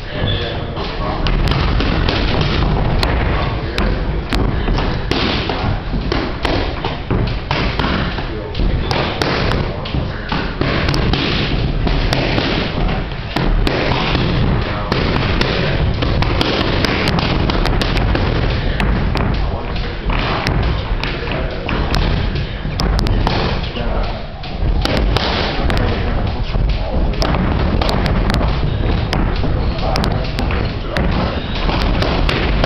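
Boxing gloves smacking focus mitts, repeated sharp hits at an irregular pace, over loud gym noise with voices.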